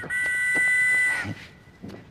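A steady, whistle-like tone held on two pitches at once for just over a second, cutting off suddenly.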